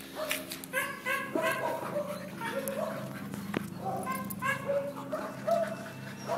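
Dogs barking and yipping in two bouts of quick, short, high-pitched barks.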